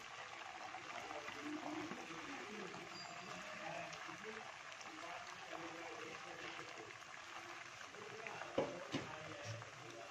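Semolina-dough balls deep-frying in a pot of hot oil, a steady sizzle and bubbling. A couple of short knocks come about eight and a half to nine seconds in.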